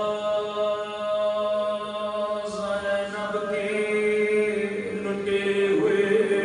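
Devotional chanting by a voice in long held notes, the melody moving to a new note about every two and a half seconds.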